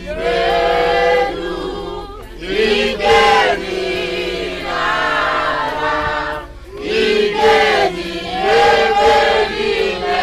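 A crowd of men and women singing a worship song together, led by a man's voice, in long held phrases with short breaths between them about two seconds in and again past the middle.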